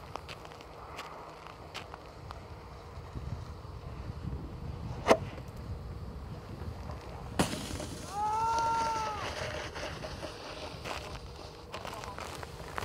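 Wind rumbling on the microphone, with two sharp knocks about five and seven seconds in as a snowboarder goes over the jump, then a person's high, held whoop of a little over a second.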